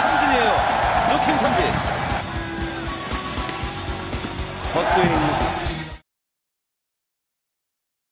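Korean baseball TV broadcast sound: a commentator talking over music, cutting off abruptly about six seconds in, followed by silence.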